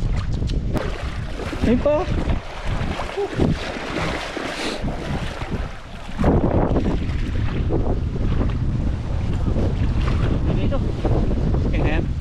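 Wind buffeting the microphone over the rush of a shallow, flowing stream. The rumble eases for a few seconds in the middle and then comes back heavier.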